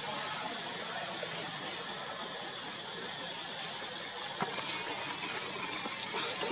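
Steady background hiss with no distinct source, with one faint tick a little after four seconds in.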